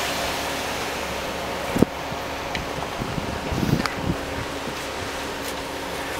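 Concrete mixer truck running with a steady hum while wet concrete slides down its chute with a continuous rushing hiss. One sharp knock comes about two seconds in, followed by a few scattered taps and scrapes.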